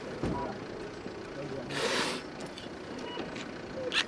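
Quiet background sound at an ambulance: a dull thump just after the start, a short hiss about two seconds in, and a few faint short beeps.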